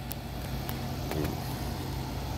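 A steady low mechanical hum, like an engine or motor running, with a few faint clicks.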